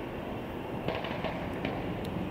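Steady engine rumble and road traffic noise, with a brief run of sharp clanks about a second in.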